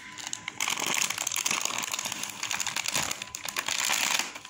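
Plastic snack packets crinkling and rustling in a toddler's hands, a dense crackle that starts about half a second in and keeps going.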